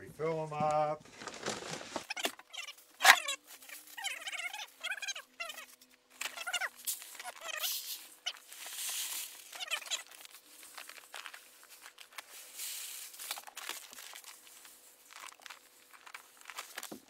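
Long-grain white rice handled and poured into plastic five-gallon buckets: grains hissing and rattling, with scattered clicks and knocks, the sharpest about three seconds in. Brief pitched vocal sounds come near the start and again a few seconds in.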